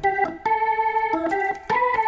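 Background music: an organ-like keyboard playing a short run of held notes that step from pitch to pitch, with two brief breaks between them.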